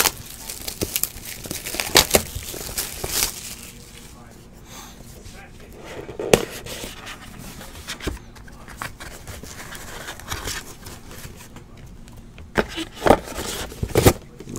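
Plastic shrink wrap crinkling and tearing as it is pulled off a trading card box, dense in the first few seconds, then cardboard box and hard plastic card holders being handled with a few sharp knocks and clicks.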